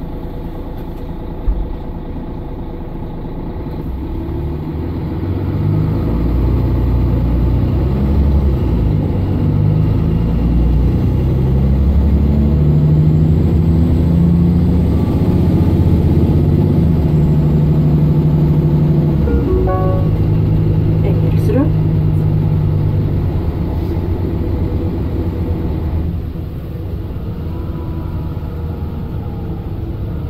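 Mercedes-Benz Citaro O530 LE bus's 12-litre OM457hLA inline-six diesel heard from inside the passenger cabin, pulling hard under kickdown: the engine grows louder about five seconds in and holds a loud, climbing note with a gear change near twenty seconds, then eases off about twenty-six seconds in.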